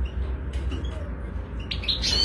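Caged European goldfinches giving a few short, high chirps near the end, over a low steady hum.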